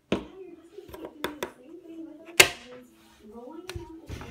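A child's voice making wordless, gliding play noises, over sharp clicks and knocks of plastic toy blocks being handled on a wooden table. The loudest knock comes a little past halfway.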